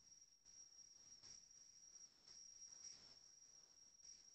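Near silence: only a faint, steady high-pitched whine, with a few soft faint rustles.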